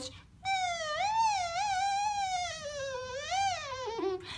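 Beatbox 'kazoo': a high-pitched hum pushed out through the mouth, with the bottom lip vibrating against the edge of the top teeth to give a buzzy, kazoo-like tone. It starts about half a second in and is held for about three and a half seconds, wavering in pitch and sinking slowly, with a brief rise near the end.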